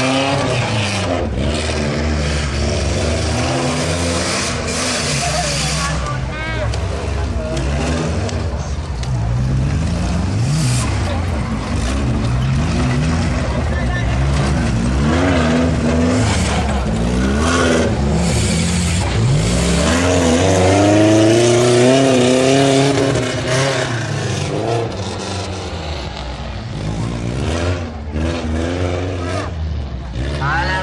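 Off-road race cars' engines revving hard and falling back again and again as they race on a dirt track, loudest about two-thirds of the way in.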